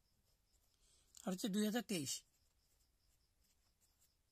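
Faint scratching of a pen writing on a paper book page, with a brief spoken phrase a little over a second in.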